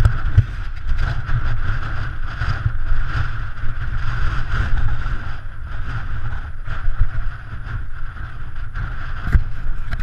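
Wind buffeting the microphone of a camera riding along on a moving bicycle: a loud, steady, heavy rumble with road noise and occasional small knocks.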